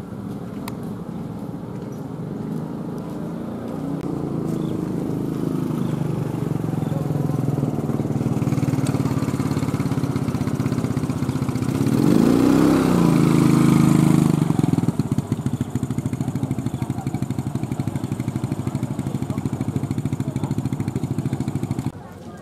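Motorcycle engine drawing closer and louder, passing close by about halfway through with its pitch rising and then falling. Afterwards an engine keeps running more quietly with a fast, even beat.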